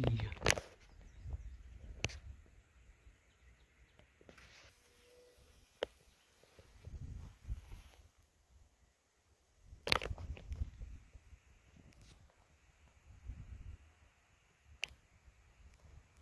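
Wind buffeting the microphone in uneven gusts, with rustling and a few sharp clicks, the strongest about ten seconds in.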